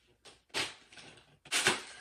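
Plastic mailing package being ripped open and its contents pulled out: two short bursts of tearing and rustling plastic, about a second apart.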